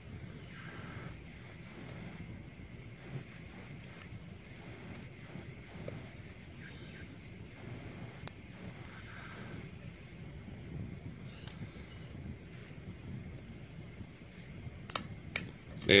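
Faint, scattered clicks of a lock pick and tension wrench working the pin tumblers of a brass 5-pin Yale-style cylinder as the pins are set one by one. Near the end there are a few sharper clicks as the last pin sets and the plug turns open.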